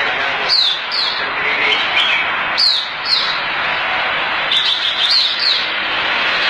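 Red-whiskered bulbul singing: short, sharp, high notes that fall in pitch, often in pairs, repeated every second or two over a steady hiss of background noise.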